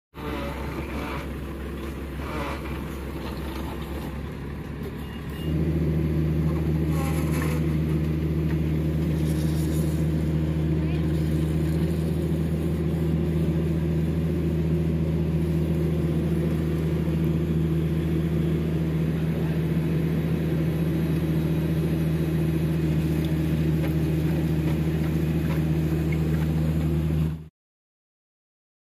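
Diesel engine of a horizontal directional drilling rig running at a steady drone, stepping up to a louder, heavier note about five seconds in as it comes under drilling load, then cutting off abruptly near the end.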